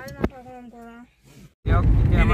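Voices in a car, then, after an abrupt jump about one and a half seconds in, the loud, steady low rumble of a moving car's cabin under a man's voice.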